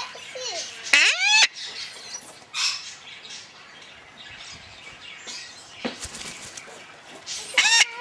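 Male red-sided Eclectus parrot calling: a loud call rising in pitch about a second in, softer sounds after it, and another loud call near the end.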